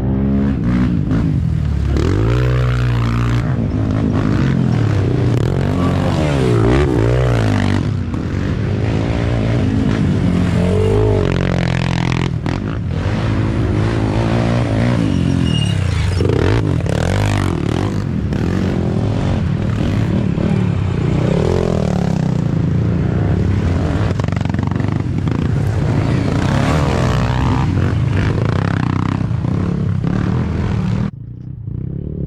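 Youth ATV (quad) engines revving up and down as racers ride along a dirt trail, their pitch rising and falling again and again as they pass close by.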